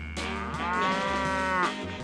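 A cow mooing once, a long call that rises and then falls in pitch.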